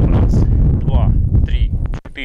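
Wind buffeting the microphone: a heavy, continuous low rumble, with brief snatches of a man's voice in the middle.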